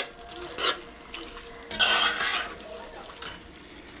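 Metal spoon stirring fried cabbage in a metal pot, scraping against the pot in a few short strokes, the longest and loudest about two seconds in.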